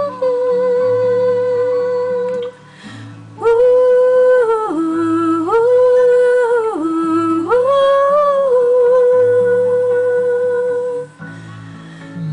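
A woman humming the song's melody without words in long held notes over a plucked acoustic guitar accompaniment. There are three phrases with short breaks between them; the middle phrase steps back and forth between a higher and a lower note.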